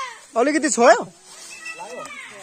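People's raised voices calling out: two short, high, drawn-out calls about half a second in, then fainter calling near the end.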